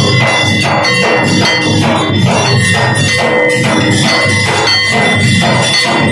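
Hanging brass temple bell rung over and over for an aarti, about three strikes a second, its ringing carrying over from stroke to stroke, with other percussion on the same beat.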